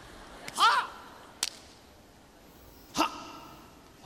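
A man's short martial-arts yell about half a second in, followed by a sharp crack and, near the three-second mark, a second hit with a brief ring.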